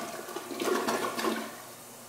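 American Standard toilet bowl emptying at the end of a flush: a click at the start, then a loud rush of water down the drain from about half a second in, dying away after about a second.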